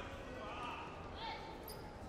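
Indistinct voices calling out in a large hall, with soft thuds of wrestlers' feet and hands on the mat as they circle and hand-fight.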